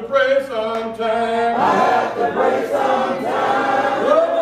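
Congregation singing a hymn a cappella, several voices together on long held notes that change pitch every second or two.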